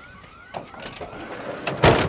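Police siren in yelp mode, its pitch sweeping up over and over at about two to three sweeps a second. A loud sudden thump comes near the end.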